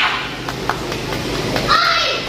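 A karate fighter's short, shrill kiai shout near the end, with the tail of another at the very start, given with a downward finishing punch on an opponent taken down to the mat. Two short sharp knocks about half a second in, over a steady hall din.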